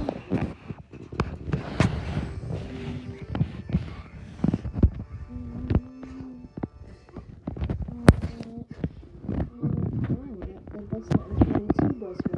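Wordless vocal sounds with a few short held tones, mixed with frequent sharp clicks and knocks of close handling.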